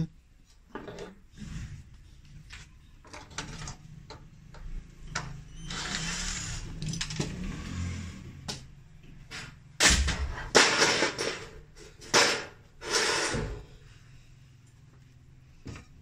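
Metal front grille of a Tokyo gas fan heater being worked loose and pulled off the casing: scraping, rattling and clicking of metal against the plastic housing, with several louder clattering knocks a little past halfway.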